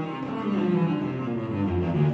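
Solo cello playing a melodic line in the Persian mode of dastgah Nava, with notes changing every few tenths of a second and a lower note sounding about a second and a half in.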